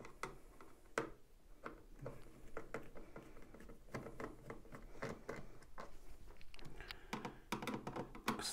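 Screwdriver backing out small screws from a plastic control-board housing, with the plastic cover being handled: a string of faint, irregular clicks and scrapes.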